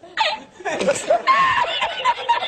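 A man laughing in high-pitched, broken bursts, from the well-known Spanish laughing-man meme clip.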